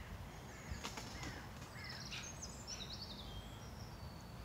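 Small birds calling in woodland: a few short chirps and quick trilling phrases, clustered in the first half to three seconds, over a low steady rumble.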